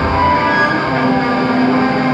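Black metal band playing live: a dense, loud wall of distorted electric guitars and drums, with a held low note coming in about a second in.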